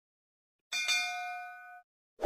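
Notification-bell sound effect of a subscribe animation: a single bell ding about two-thirds of a second in, ringing with several clear pitches for about a second before it cuts off suddenly.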